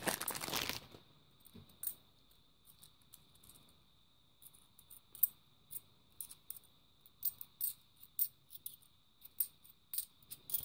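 Clear plastic coin bag crinkling for about a second, then faint, scattered clicks of 50p coins against each other as a small stack is handled and sorted.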